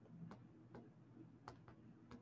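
A few faint, unevenly spaced taps of a stylus on a tablet's glass screen during handwriting, over near-silent room tone.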